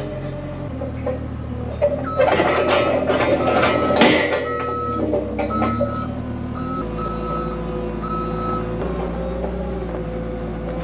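Forklift engine running, its pitch shifting a couple of times, with a backup alarm beeping on and off from about two seconds in to near the end. A burst of metal clanking and clatter about two to four seconds in.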